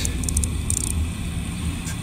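A steady low rumble with a few faint, brief high-pitched hissy flecks in the first second.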